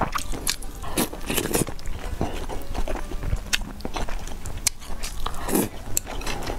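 Close-miked biting and chewing of a broth-soaked fried egg, with irregular wet clicks and mouth smacks.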